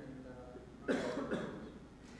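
A person coughing, two quick coughs about a second in, against faint speech in the room.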